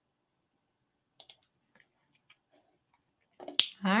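Faint, scattered small clicks in a quiet room, then a sharp mouth click as a woman starts to speak near the end.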